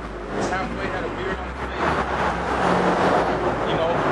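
Road traffic going by: a steady low engine rumble with faint voices over it.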